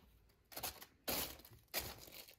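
A canvas turntable spun by hand the opposite way, giving three short rustling, scraping bursts.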